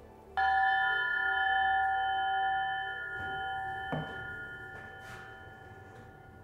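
Crystal chime struck once, ringing with several steady tones at once that slowly fade, rung to signal the end of a session. A light knock comes about four seconds in.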